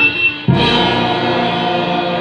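Brass band (brass, clarinets and drums) playing a medley in sustained full chords; the sound drops briefly just after the start and the whole band comes back in together about half a second in.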